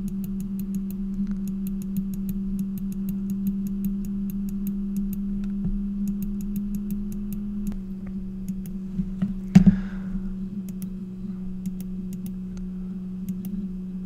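Computer mouse left-clicked over and over, faint sharp clicks coming in quick irregular runs, over a steady low electrical hum. One louder knock about nine and a half seconds in.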